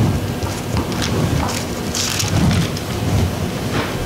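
Pages of a Bible being leafed through, a steady rustling with louder flurries.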